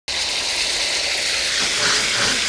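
Tomato passata hitting hot olive oil and garlic in a stainless steel frying pan, the oil sizzling with a steady hiss.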